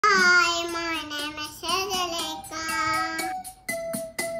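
A young child singing a few long, held notes, followed near the end by a simple keyboard melody starting up.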